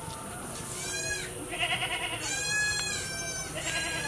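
A run of short, pitched animal calls, one after another, heard faintly in the background.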